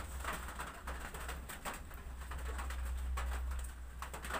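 Straight razor scraping along the nape hairline in short strokes, under a low steady hum and a bird calling in the background.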